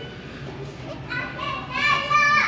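A child's high-pitched voice calling out about a second in, rising and then held, over steady background room noise.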